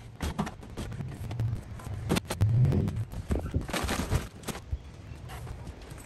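Luggage being loaded into a plastic Thule roof cargo box: scattered knocks, clicks and scuffs as bags are pushed in and shifted, with a couple of longer sliding scrapes.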